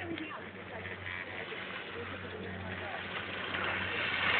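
A steady low mechanical hum under faint outdoor noise, growing a little louder near the end.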